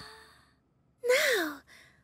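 A cartoon character's voiced, sleepy sigh, rising then falling in pitch, about a second in. Lullaby-style music fades out just before it.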